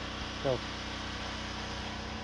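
A steady low mechanical hum, with one short spoken word about half a second in.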